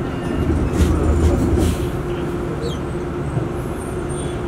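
Inside a battery-electric bus on the move: a steady low rumble from the ride, with a steady hum underneath and a heavier rumble about a second in.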